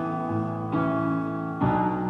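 Instrumental backing track with sustained piano chords, a new chord struck about every second.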